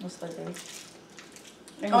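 Faint rustling of twist-wrapped candy chews being unwrapped by hand, with soft voices; a voice says 'oh' near the end.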